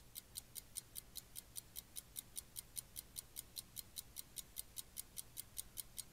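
Faint, quick, even ticking at about five ticks a second, a clock-style timer ticking down while a quiz question waits for its answer.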